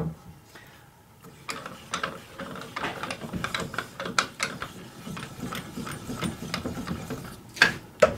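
Rapid ratchet-like clicking from the wood lathe's tailstock mechanism, worked by hand to bring the centre up against a bowl blank, with a louder click near the end.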